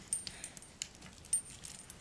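Quiet handling noise: a few light clicks with a faint high metallic ringing clink.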